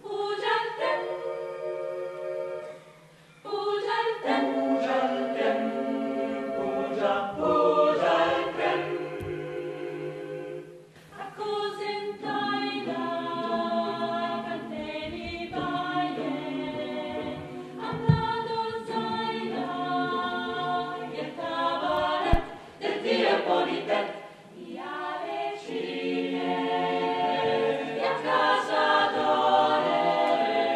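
Mixed choir of men's and women's voices singing a cappella in several parts, moving through sustained chords, with short breaks about three seconds in and again near the end. Two brief clicks in the second half.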